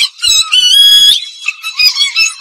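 Tamil film song playing: a high melody line moving in short stepping notes, with a few faint beats beneath and almost no bass.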